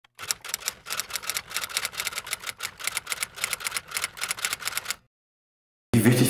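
Rapid, evenly spaced keystroke clicks like a typewriter, about five or six a second, stopping abruptly about five seconds in.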